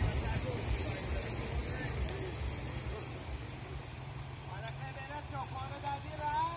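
Steady rush of a river running fast over stones, with a heavy low rumble throughout. Short high voices or calls come in near the end.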